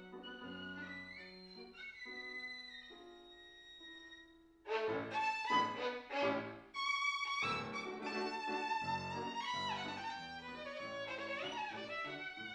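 Solo violin played with grand piano accompaniment. A soft passage of held notes gives way about halfway in to a sudden louder section, with struck piano chords under the violin's melody.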